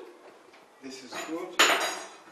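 Metal kitchen utensils clinking: softer handling sounds, then a loud sharp clink with a brief high ring about one and a half seconds in.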